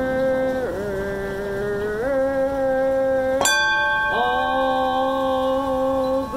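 Women chanting a Zen Buddhist dedication on one sustained note, the pitch dipping and stepping between syllables. About three and a half seconds in, a singing bowl is struck once and rings on under the chant.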